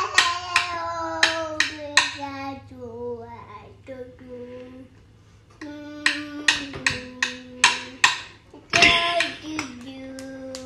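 Young child singing wordlessly in long held notes that step down in pitch, with sharp taps keeping a rough beat; there is a short lull about five seconds in.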